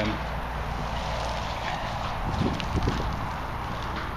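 Steady low rumble of wind on the microphone, with a few dull knocks a little past halfway as a spade is set into grass turf.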